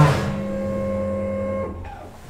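Steady electric hum with a clear pitch from the 1995 Deve Schindler hydraulic elevator's machinery as the car stops at the landing and the door is opened. The hum cuts off suddenly about a second and a half in.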